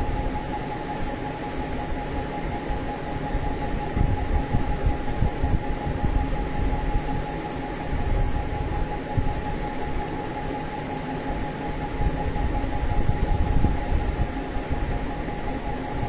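A steady background hum and low rumble with a constant high tone running through it, like a fan or electrical appliance running in the room.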